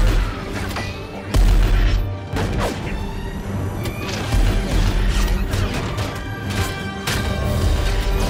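Battle-scene film soundtrack: a music score mixed with sound effects of explosions and crashes, with heavy booms about a second and a half in and again about four and a half seconds in.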